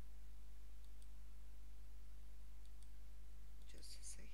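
Computer mouse clicks over a steady low electrical hum: faint single clicks about a second in and near three seconds, then a louder cluster of clicks near the end.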